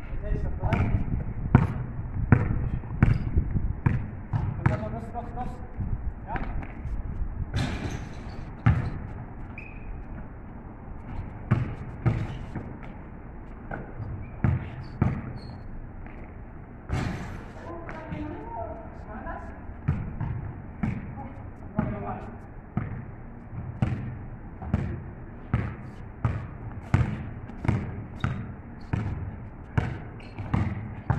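A basketball bounced again and again on a paved outdoor court during play, settling into steady dribbling of a little more than one bounce a second near the end. Players' voices call out a few times between the bounces.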